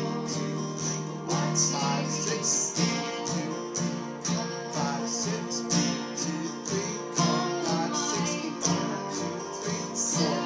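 Acoustic guitar, capoed at the third fret, strummed in a steady rhythm through a chord pattern.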